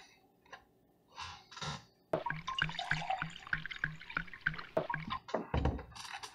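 Milk sloshing inside a plastic gallon jug as it is swirled to mix evaporated milk with water, with small clicks from the plastic. It starts about two seconds in after a near-quiet start.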